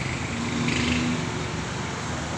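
Steady background hum of road traffic, with a faint steady engine tone in the first half.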